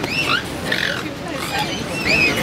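Mute swan cygnets peeping: short, high calls that rise and fall, several in quick succession, over people talking.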